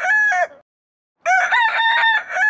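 Rooster crowing: the end of one crow, then after a short gap an identical crow beginning a little past the middle. It is the same recorded crow played again.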